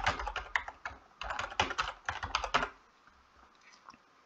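Typing on a computer keyboard: two quick runs of keystrokes with a short pause between them, stopping a little before three seconds in, followed by one faint click near the end.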